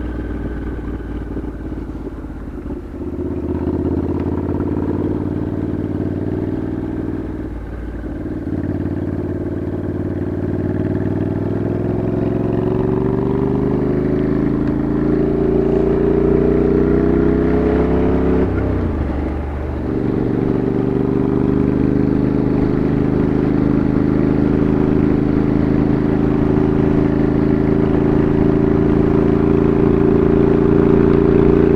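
Motorcycle engine running under way, its note climbing slowly in pitch and growing louder. The note breaks off briefly about three, eight and nineteen seconds in, then settles to a steady pull near the end.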